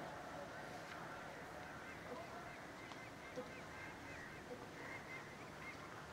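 A hushed, faint outdoor pause: low background noise with a series of faint, repeated high-pitched chirps.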